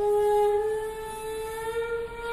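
A flute holding one long note that slides slowly upward in pitch, part of the dance's accompaniment music.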